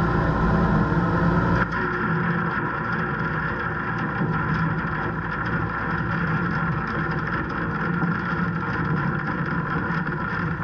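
Case IH tractor engine running steadily as it pulls a Kuhn Knight feed mixer wagon along the bunk, with the wagon's mixer and discharge conveyor running as ground hay ration pours into the bunk. The level drops slightly and suddenly just under two seconds in.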